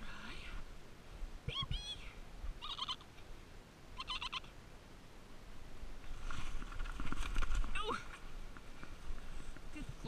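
Goat kids bleating in several short calls, then a longer, noisier stretch of bleating with scuffling about six to eight seconds in, while a kid is grabbed and held.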